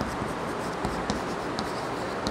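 Chalk writing on a blackboard: short scratchy strokes and a few sharp taps as letters are formed, over steady background noise.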